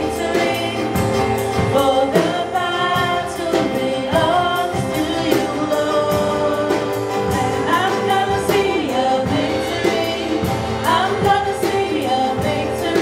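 A live church worship band playing a song: a lead vocal over acoustic guitar and a steady drum beat.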